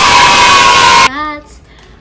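Loud crowd cheering and shouting as a sound effect, cutting off abruptly about a second in.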